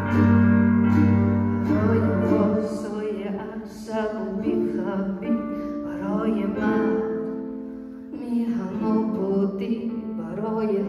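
Live acoustic music: a ukulele strummed with piano accompaniment, with sustained low notes in the first couple of seconds.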